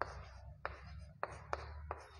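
Chalk writing on a chalkboard: soft scratching strokes broken by about five sharp taps of the chalk, roughly one every half second, as the letters are formed.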